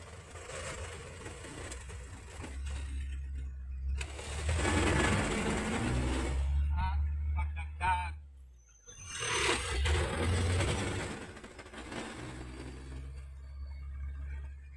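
Light truck engine running under load inside the cab while the driver changes gear: the engine note falls away and goes briefly quiet about eight and a half seconds in as the shift is made, then picks up again as the truck pulls in the new gear.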